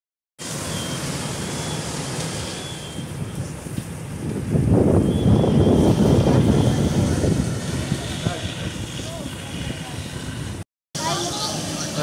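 Steady rumbling noise of fire apparatus running at a working building fire, with hoses spraying; it grows louder into a rushing stretch in the middle, and a thin high tone comes and goes early on. A voice starts near the end.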